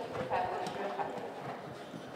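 Horse's hoofbeats on the soft sand footing of an indoor arena as it canters, with people talking in the background.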